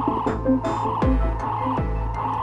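Live electronic music from pocket synthesizers and drum machines: a steady beat of kick drums that fall in pitch, a deep sustained bass, short pitched synth notes, and a throbbing, croaky synth tone in the middle range.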